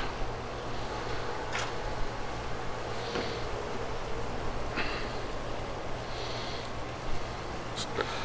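Steady outdoor background noise with wind on the microphone and a low hum. A seasoning shaker is shaken over a raw chicken, giving soft rattles about three seconds in and again past six seconds.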